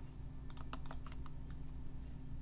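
A quick, irregular run of about six clicks from computer keys, about half a second in, over a steady low hum.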